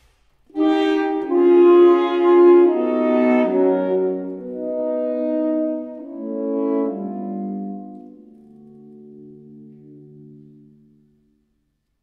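Saxophone quartet of soprano, alto, tenor and baritone saxophones playing a slow phrase of sustained chords that shift every second or so. The phrase swells, then fades softer from about eight seconds in as a low held note enters, and dies away shortly before the end.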